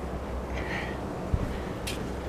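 Low steady hum with a soft knock and, near the end, a sharp click: handling of a deep fryer's basket as potato balls are set into it.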